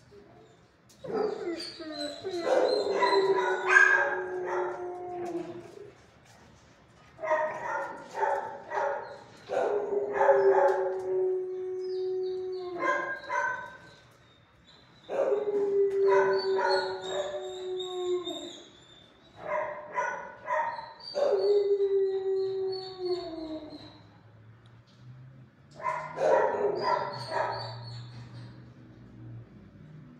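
A dog howling in about five bouts, each starting with short barks and yips and ending in a long, steady howl that drops in pitch as it trails off.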